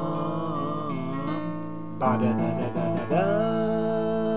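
Acoustic guitar playing under a voice singing in Czech. A long held sung note, then a new syllable, "pa", starts about halfway through.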